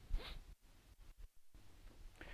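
Faint chalk on a blackboard: a short scratchy stroke just after the start, then a few light taps as small marks are added to an equation.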